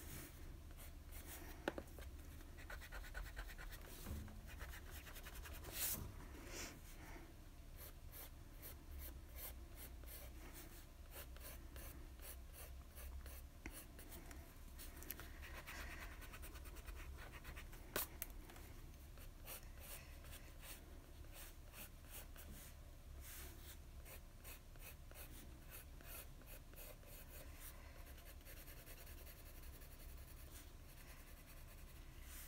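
Graphite pencil sketching on sketchbook paper: faint, quick scratchy strokes, with a few sharper clicks now and then.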